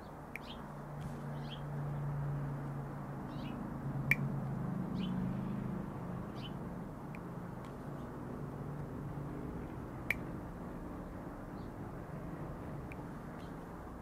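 Small birds chirping briefly now and then over a low, steady hum. Two sharp clicks, about four and ten seconds in, come from the Klein K12065CR wire strippers cutting 20-gauge stranded wire.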